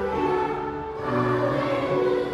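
Choir music: voices singing long held notes, moving to a new chord about a second in.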